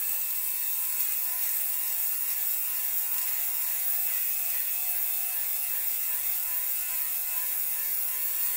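Battery-powered electric lint remover (fabric shaver) running steadily, its blades shaving the bobbles off a wool coat's pilled surface: an even motor hum with a hiss.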